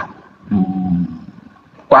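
A man's short held hesitation sound, like a drawn-out "à", about half a second in, then a near-quiet pause before he speaks again near the end. The voice comes through an online voice-chat room.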